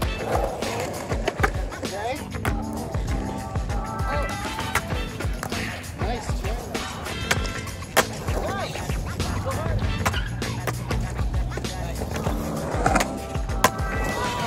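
Skateboard wheels rolling over concrete, with sharp clacks and knocks of the board now and then, under background music with a steady beat.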